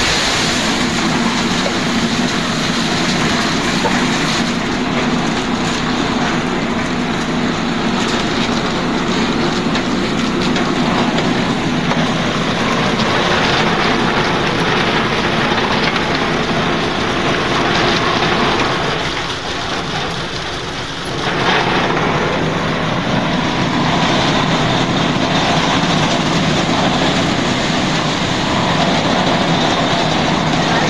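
Concrete batching plant machinery running: belt conveyors and the reversible drum mixer make a loud, steady mechanical noise with a low hum, dipping briefly about two-thirds of the way through.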